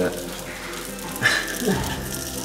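A man laughing: a short breathy burst about a second in, then a falling voiced sound near the end.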